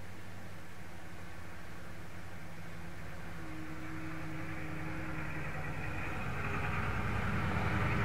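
Low steady mechanical hum with a rumble that grows steadily louder through the second half.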